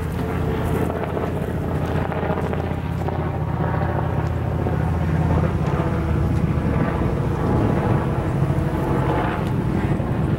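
Steady low hum of a car's engine and tyres, heard from inside the moving vehicle.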